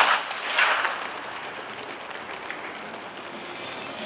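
Starting gun fired for a sprint start: a loud crack that rings out, followed about half a second later by a second, shorter burst. A steady, lower background runs on after it.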